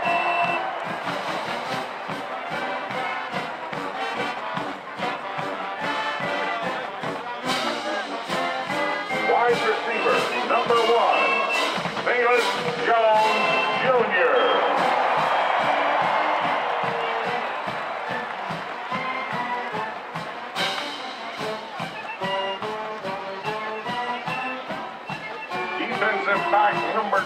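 A marching band playing: brass, saxophones and clarinets over a steady drumbeat.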